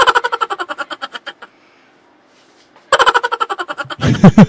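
Laughter in two bursts of rapid ha-ha pulses: one at the start that fades over about a second and a half, and another starting near the end.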